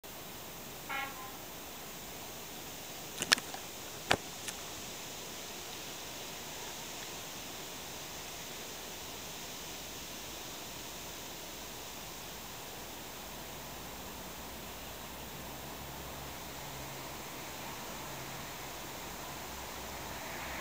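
Steady outdoor background hiss, broken by two sharp knocks about three and four seconds in. In the last several seconds a low steady engine hum comes up: the diesel passenger train's engine running before departure.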